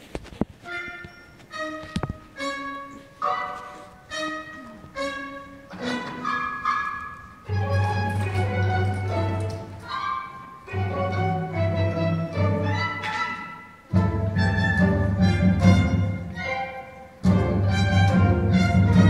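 Theatre orchestra playing the instrumental introduction to a stage musical number: a run of short detached notes, then a low bass line and fuller string passages come in about seven seconds in.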